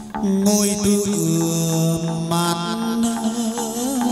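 Hát văn ritual music: long, held chanted notes that waver near the end, over a plucked-string and percussion ensemble keeping a light regular beat, with a bright high shimmer coming in about half a second in.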